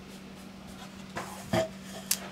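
A pencil scratching and rubbing along the edge of an aluminium stair-nosing trim as a line is marked onto a plywood step, with a few soft taps of the trim against the wood in the second half.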